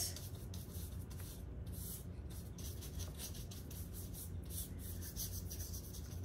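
Paintbrush stroking and dabbing metal-flake rust paint onto a window frame: soft, scratchy brush strokes repeating a few times a second. A low steady hum runs underneath.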